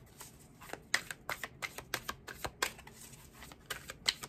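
A tarot deck being shuffled by hand: an uneven run of quick card clicks, a few each second, as the cards slip and drop between the hands.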